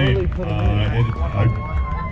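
A man talking over a public-address system. A thin steady tone holds under his voice for about a second in the second half.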